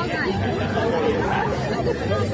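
Young girls' voices talking over each other in a heated back-and-forth argument.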